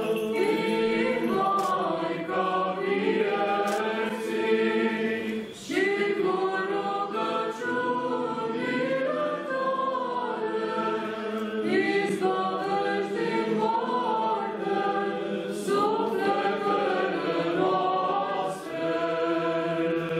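Choir singing Orthodox liturgical chant a cappella, several voices together, with brief breaks for breath about six seconds in and again late on.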